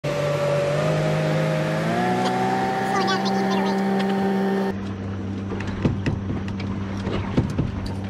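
Suzuki outboard motor running with the boat under way, its pitch rising about two seconds in. Near the middle the sound changes abruptly to a lower, steady hum with a few brief knocks.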